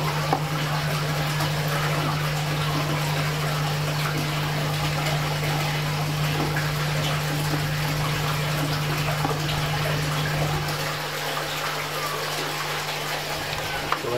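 Steady running water with a constant low pump hum, easing slightly near the end.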